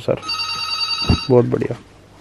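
A steady, high electronic ringing tone lasting about a second, followed by a brief snatch of speech.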